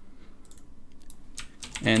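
A few faint computer keyboard keystrokes, spaced irregularly, as text in a code editor is deleted and retyped.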